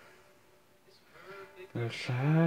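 Quiet at first, then near the end a man's voice comes in loudly with a drawn-out, wavering sung note.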